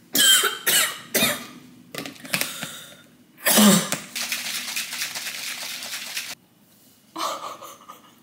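A woman coughs in several short fits, then a plastic shaker bottle holding pre-workout drink is shaken hard for about two seconds, ending suddenly.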